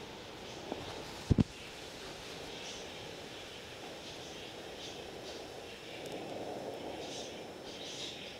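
Quiet garden ambience with faint high bird chirps now and then, and a short double thump about a second in, a knock against the clip-on wireless microphone.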